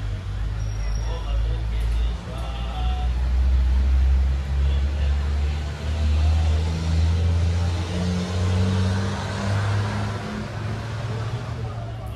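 A motor vehicle's engine running with a low hum that rises in pitch about two-thirds of the way through, with faint voices in the background.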